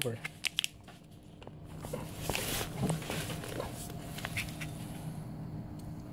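Foil snack pouch crinkling and rustling as gloved hands handle it, with a few light clicks, over a steady low hum.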